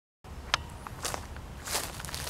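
Outdoor street ambience: a steady low rumble with a few short clicks and scuffs.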